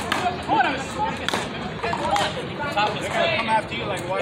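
Voices talking on an outdoor court, with a few sharp knocks among them.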